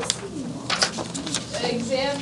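Low, quiet murmuring voices in a classroom, with a few soft clicks about three-quarters of a second in.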